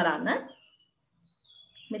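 A woman's voice finishing a word in the first half second, then a faint thin high tone sliding slowly down in pitch through the second half.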